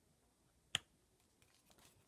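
A single sharp click a little under a second in, then a few faint ticks near the end, from hands handling a plastic Blu-ray case.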